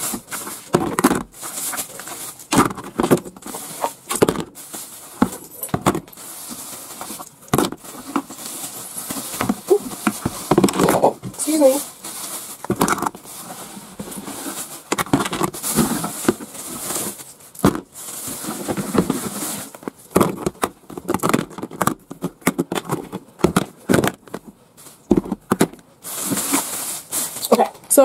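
Small metal pull-tab cat food cans set down and stacked in a clear plastic storage bin: a string of irregular clinks and knocks, with plastic rustling between them.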